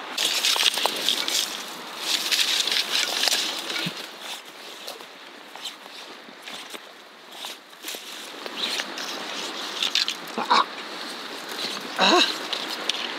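Brush and bramble branches rustling, crackling and scraping as people push through a thicket. It is densest in the first few seconds, then thins to scattered rustles.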